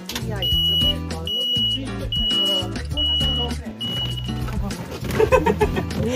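Music with a steady, blocky bass line plays throughout. Over it, a small electric sightseeing vehicle's reversing beeper sounds five times, about one high beep a second, stopping after about four seconds. Voices begin near the end.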